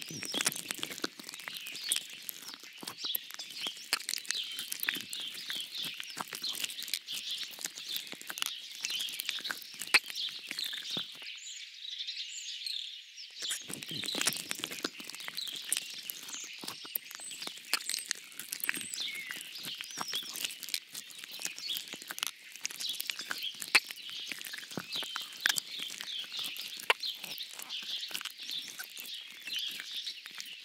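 Birdsong: a chorus of small birds chirping and twittering continuously, with many small clicks scattered through it.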